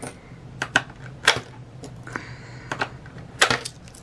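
Coins fed one at a time through the slot of a digital coin-counting jar, each dropping in with a sharp metallic clink; about eight clinks at uneven intervals, some in quick pairs.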